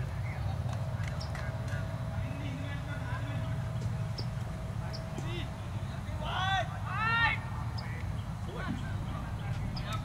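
Outdoor cricket-ground ambience: a steady low rumble with faint, distant voices. A couple of short, loud, high calls that rise and fall in pitch come about two-thirds of the way through.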